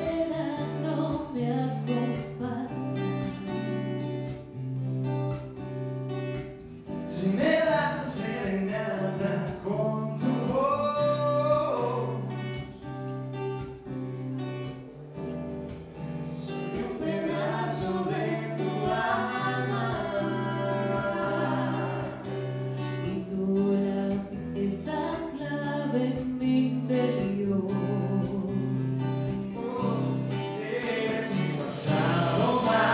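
A woman singing a ballad live into a microphone with a band behind her: acoustic guitar, keyboard, bass and drums.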